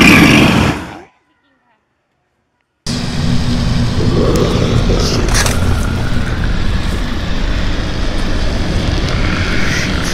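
A short, loud vocal burst over a caged gorilla close-up. Then, after a second and a half of silence, a burning flare hissing over a steady low rumble, which is presented as a Sasquatch growl.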